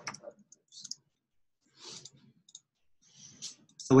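Scattered, faint clicks of typing on a computer keyboard, a few keystrokes at a time with pauses between them.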